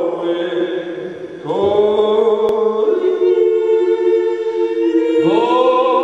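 A small vocal group singing a Styrian yodel (Steirer Jodler) in close harmony, holding long chords. A new, louder chord comes in about a second and a half in, and the voices slide up into another chord near the end.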